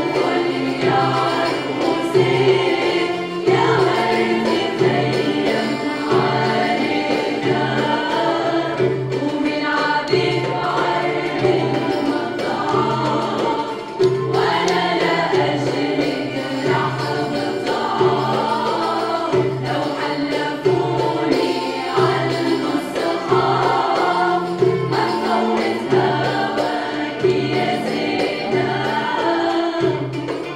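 Women's choir singing a traditional Syrian bridal-procession (zaffa) song, with a small ensemble of strings and percussion keeping a steady beat.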